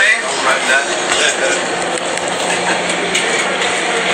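Indistinct background voices and chatter over steady ambient noise, with a low steady hum in the second half.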